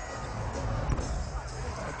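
Music from the arena's sound system over basketball crowd noise, with one sharp knock about a second in.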